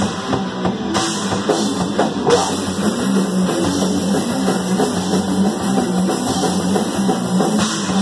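Punk rock band playing live, without vocals: drum kit driving the beat with cymbal crashes, over electric guitar and bass.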